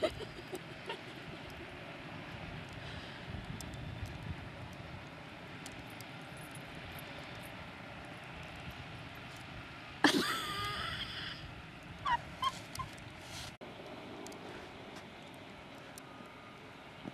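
A dog gives a loud, short call about ten seconds in, then a few brief yips, over a steady background hiss.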